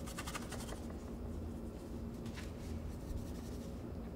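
Paintbrush scratching paint across a painted panel: a quick run of short strokes at the start and another brief stroke about two seconds in, over a low steady hum.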